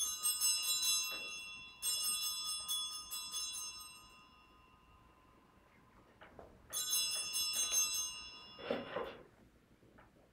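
Altar bells (a sanctus bell set) rung three times, each a short, quickly shaken peal with a long ring-out. They are rung at the consecration of the Communion bread.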